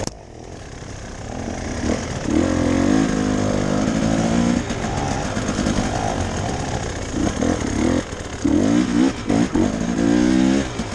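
Enduro dirt bike engine ridden off-road over rough ground. The revs drop sharply at the start, then build, rising and falling under the throttle, with a run of quick throttle blips near the end.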